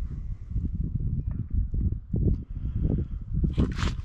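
Irregular low thumps and buffeting on the microphone, with a brief rustling brush near the end as a hand comes up to the camera.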